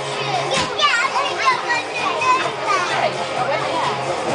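Children's voices chattering and calling out, with music playing underneath.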